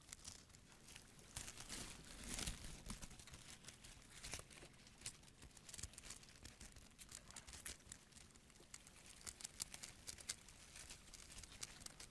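Faint crackling and crinkling made of sparse small clicks: ants tearing at a newly emerged dragonfly's papery wings.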